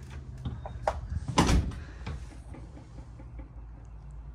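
A door being shut: a few light clicks and knocks, then one heavier thud about a second and a half in, over a steady low hum.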